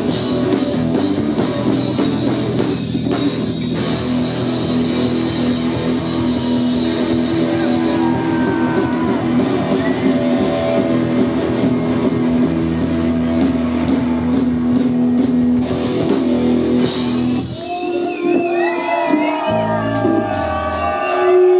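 Live rock band, with distorted electric guitars, bass and drum kit, playing loud held chords with crashing cymbals as a song winds up. The music stops about three-quarters of the way in, and the crowd cheers.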